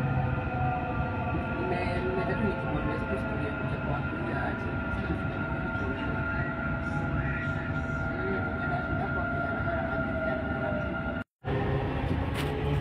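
Dubai Metro train running along its elevated track, heard from inside the carriage: a steady running rumble with a steady whine over it. The sound cuts out briefly near the end.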